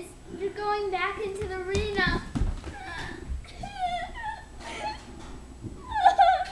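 A girl's voice crying out in distress: a long held wail for the first two seconds, then shorter broken sobbing cries. There are a few dull thumps about two seconds in.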